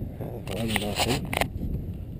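Low rumble of wind buffeting the microphone, with a man's voice briefly calling out from about half a second in to about a second and a half.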